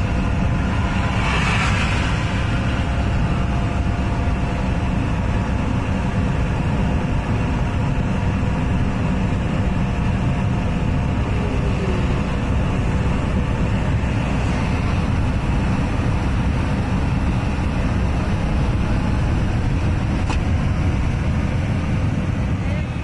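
Steady road and engine noise inside a car cruising on the highway, a constant low rumble that does not change.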